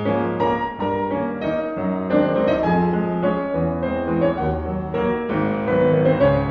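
Background piano music, soft and slow, with notes struck one after another over held chords.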